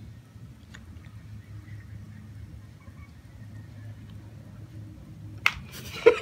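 Faint chewing of a mouthful of soft chocolate-coated cookie, with a single sharp knock near the end.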